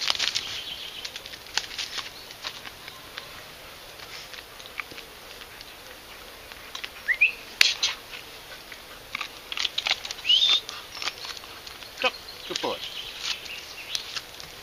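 Birds chirping outdoors: a few short, quick rising chirps among scattered light clicks and knocks.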